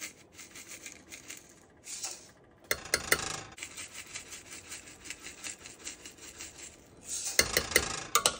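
Salt and sugar granules shaken from plastic containers onto a metal spoon and tipped into a stainless steel pot, a continuous fine rasping and ticking. A metal spoon scrapes and clinks against the pot in two louder spells, about three seconds in and near the end, the second as the pot is stirred.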